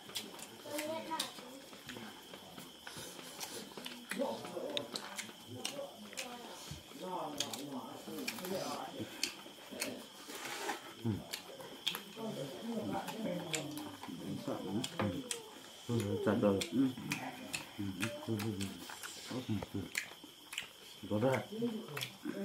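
Men's voices talking and murmuring in low tones, with the small smacks and clicks of people eating with their hands. A faint thin high tone runs steadily underneath.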